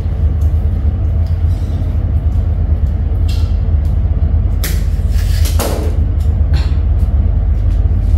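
A few strokes of a soft grass broom sweeping a tile floor, the loudest about halfway through, over a steady low hum.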